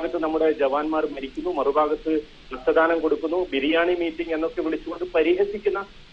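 Speech only: a voice talking steadily in Malayalam, with a short pause about two seconds in.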